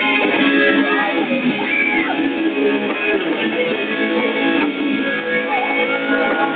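Pop-rock band music, led by a strummed electric guitar, starting abruptly and playing on steadily.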